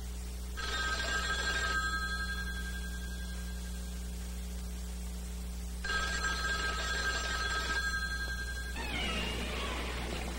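A telephone bell ringing twice, the rings about five seconds apart. Near the end a different sound with sliding pitches takes over.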